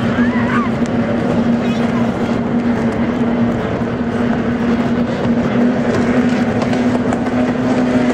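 Racing outboard motors of race boats on the course, running at speed as one steady engine tone over a wash of noise, with a child's brief voice in the first second.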